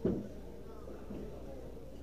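A single sharp click of a pool cue tip striking the cue ball right at the start, then quiet hall ambience with a low hum and faint murmur.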